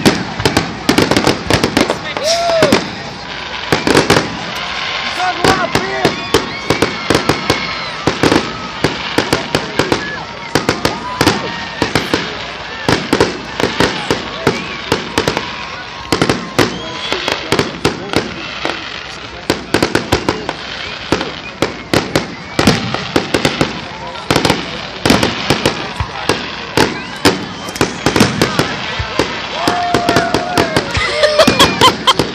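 Fireworks display going off in a dense barrage of bangs and crackles, many per second without a break, with a few whistling glides, as the show reaches its closing stretch.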